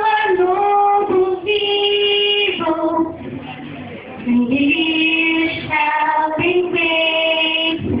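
A young girl's voice singing a slow melody in long, held notes, with short breaks between phrases.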